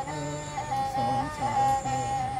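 A Bodo serja, a bowed folk fiddle, playing a slow folk tune, with a long-held high note over a lower line that moves in pitch.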